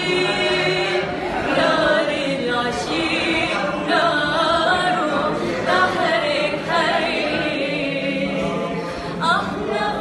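Women singing a slow melody unaccompanied, holding long wavering, ornamented notes.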